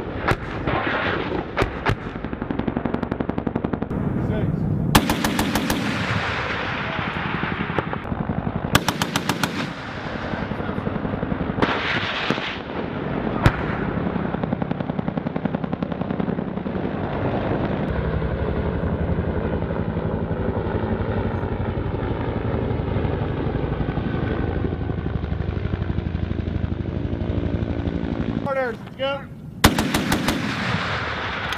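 Sustained automatic gunfire in rapid bursts, the sharpest about five, nine and twelve seconds in, over a steady rattle of continuing fire.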